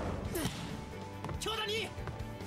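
Anime soundtrack: background music under a sharp volleyball hit about half a second in, then a raised Japanese voice near the end.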